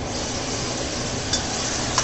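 Braised beef tipped into a wok of frying tomatoes, sizzling steadily, with a metal spatula stirring and clicking against the wok a couple of times.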